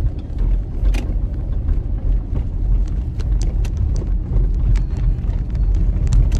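Car cabin noise while driving: a steady low road and engine rumble, with a sharp click about a second in and a few lighter ticks.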